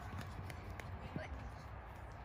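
Faint, scattered footfalls of children running on dry grass, over a low steady background rumble.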